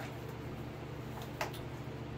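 Steady low hum of the workshop background, with one faint short click about one and a half seconds in, like a part being handled.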